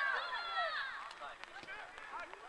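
Several distant voices shouting and calling out across the football pitch, loudest in the first second and then fading.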